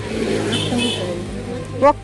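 Women's voices talking, with a loud rising exclamation near the end, over a steady low hum.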